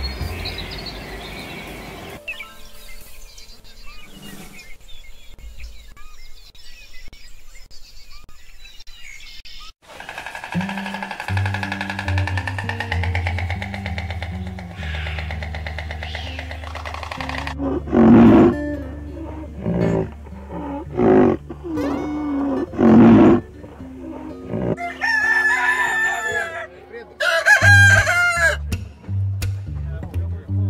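A rooster crowing twice near the end, over steady background music. Several loud separate animal calls come before it.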